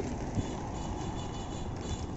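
Steady road noise from car traffic on the adjacent road, a car driving past.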